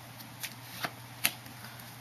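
A deck of playing cards being cut and shuffled in the hands, with three sharp snaps of the card packets about 0.4 s apart, the last the loudest.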